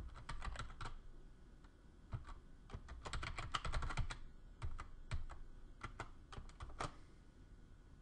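Computer keyboard keystrokes, typed in short quick runs with pauses between them.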